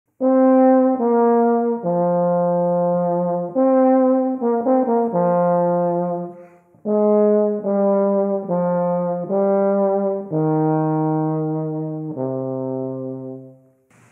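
A euphonium plays a slow melodic phrase of a dozen or so held notes, with a short breath about six and a half seconds in. It ends on a long low note that fades away.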